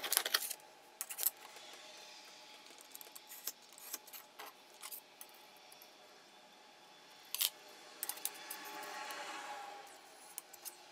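Scattered light clicks and taps of small steel layout tools, a scribe and a small square, being set down and shifted against a steel bar on a granite surface plate.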